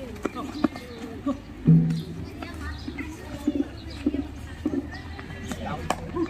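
Kho-kho players' short shouts and calls mixed with sharp taps or footfalls on the dirt field, with one loud, low shout about two seconds in.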